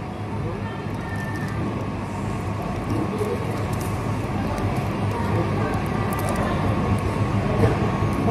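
Coffee-shop background noise: indistinct voices of other people over a steady low hum.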